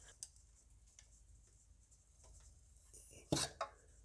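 Faint plastic clicks and rubbing from ignition coil packs being gripped and worked loose on a Mercedes M282 four-cylinder engine, then one short loud noise a little after three seconds in.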